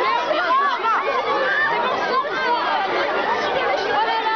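Crowd of excited fans, many overlapping high-pitched voices calling out and chattering at once.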